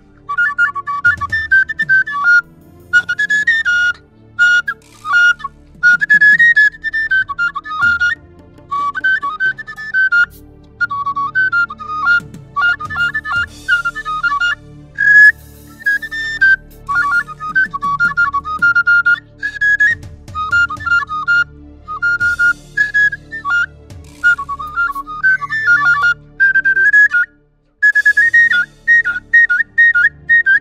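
A flute playing a lively, high melody in short trilling phrases with brief pauses between them, over a faint low accompaniment.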